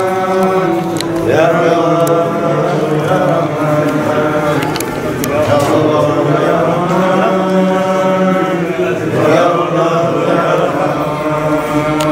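Voices chanting a religious chant in long, held phrases.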